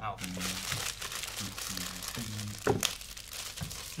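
A mail package's wrapping being handled and torn open by hand, crinkling and rustling, with a sharper crackle about two-thirds of the way through.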